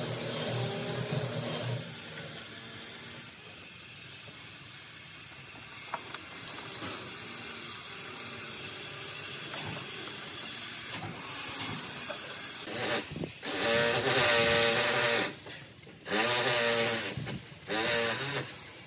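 A metal hand tool scraping along fresh cement render on a pillar base, in a few loud rasping strokes in the last few seconds, over a steady hiss.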